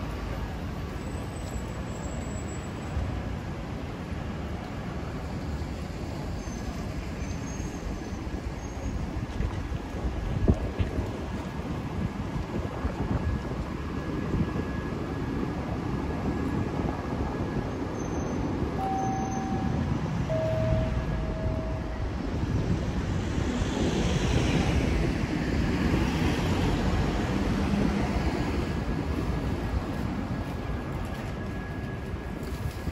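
City street ambience: a steady rumble of road traffic with vehicles passing, and a swell of hiss late on as one goes by. A few short electronic beeps sound a little past the middle.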